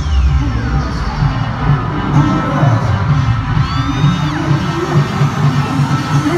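Pop song played loud over an arena sound system at a live concert, with a steady pulsing bass beat and fans cheering and screaming.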